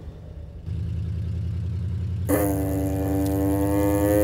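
Film soundtrack: a low, evenly pulsing rumble comes in about a second in. About two seconds in, a loud sustained horn-like drone tone joins it.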